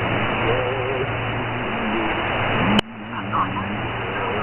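Shortwave receiver tuned to 4055 kHz in sideband mode, playing steady band-noise hiss that cuts off above about 4 kHz, with a low hum and the faint wavering tones of a weak, garbled signal. A sharp click comes about three quarters of the way through, and the hiss dips briefly after it.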